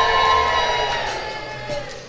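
A held musical chord swells and fades over the sound of a crowd of wedding guests cheering in response to a toast.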